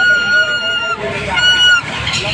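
A shrill, steady horn-like tone sounded twice: a long note of about a second, then a shorter one of about half a second.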